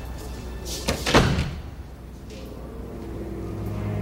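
A heavy door slams shut about a second in, over a tense film score that swells near the end.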